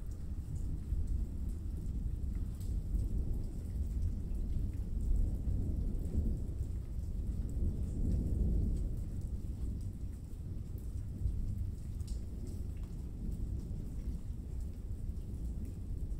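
Thunderstorm ambience within an electronic album track: a low, rolling rumble of thunder that swells midway, over a faint patter of rain, with no beat or melody.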